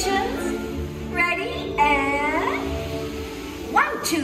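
Ride soundtrack music from the attraction's speakers, with a high cartoonish character voice calling out in the middle, its pitch sliding down.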